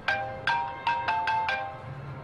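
Mobile phone ringtone: a short melody of struck, quickly fading chime notes, about six in two seconds, looping. A short gap comes near the end before the phrase starts over.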